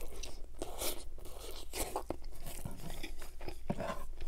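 Close-miked chewing of a McDonald's Junior Chicken sandwich, the mouthful crunching in irregular bites.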